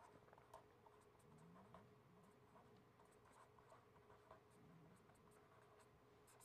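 Near silence with faint pen-on-paper strokes as handwritten letters are written: soft, scattered scratches and ticks over a faint steady hum.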